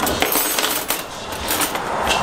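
Stainless steel wire hooks clinking and jingling against each other in a run of sharp metallic clinks as a bunch is handled.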